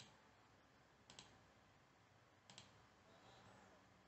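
Three faint computer mouse clicks, each a quick double tick, spaced a little over a second apart against near silence.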